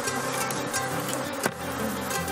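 Honeybees buzzing around the hives under background music, with a single sharp click about one and a half seconds in as a metal hive tool is set down on the hive lid.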